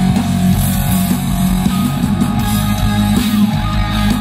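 Live hard-rock band playing at full volume through a PA: electric guitars over bass and steadily pounding drums, a guitar-led passage.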